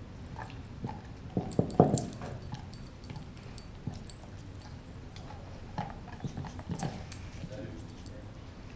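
Doberman gnawing a raw beef leg bone: irregular clicks, scrapes and knocks of teeth on bone, loudest in a cluster about two seconds in and again around seven seconds.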